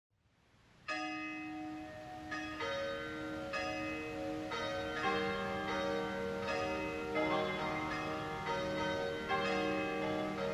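Church bells ringing a run of strokes at different pitches, roughly one a second, each note ringing on into the next. The ringing starts about a second in.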